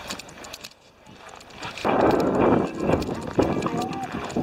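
Footsteps crunching on packed snow, louder from about two seconds in, with people's voices in the background.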